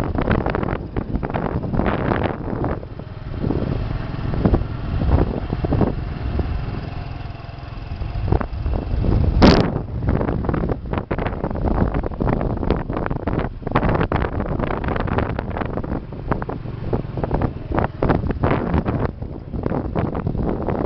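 Motorcycle riding along a concrete road: the engine runs steadily under heavy wind buffeting on the microphone. There is one sharp knock about halfway through.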